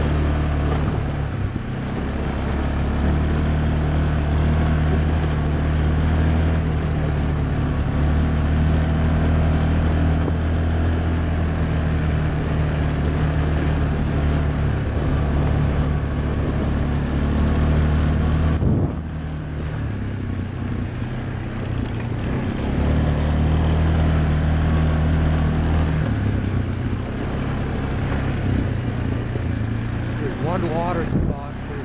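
Yamaha ATV's single-cylinder four-stroke engine running under throttle on a trail ride, a steady low note. It eases off a little past halfway, picks up again about four seconds later and eases once more near the end.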